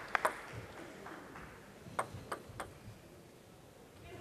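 Table tennis ball bouncing with sharp pings: two quick ones at the start, then a run of four coming faster about two seconds in.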